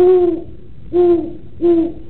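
An owl hooting three times, as a sound effect: one long hoot, then two shorter ones about a second in and near the end, each at a steady low pitch.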